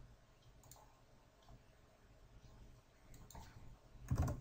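Near silence: faint room hum with a few faint, sharp clicks of a computer mouse.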